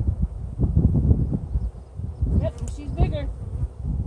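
Honeybees buzzing around an opened hive while a comb frame is lifted out.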